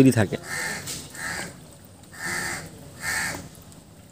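A bird calling outdoors: four short calls, the last two louder.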